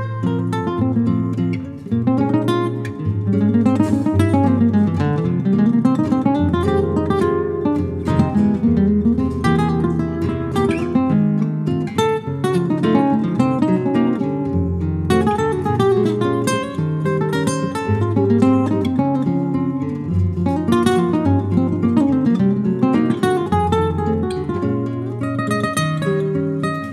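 A duo of a Spanish guitar and a jazz guitar playing together: plucked notes in quick runs that sweep up and down in pitch over a low bass line, without a break.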